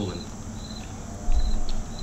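Outdoor insects chirping: short high-pitched chirps repeating about every half second. A brief low thump a little past halfway through is the loudest sound.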